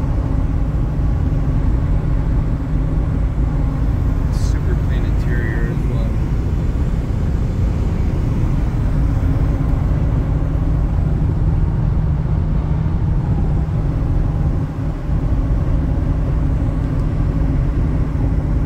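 Interior cabin noise of a 1996 Ford Thunderbird cruising at highway speed: a steady drone of engine, tyre and road rumble. A brief higher sound comes about four and a half seconds in.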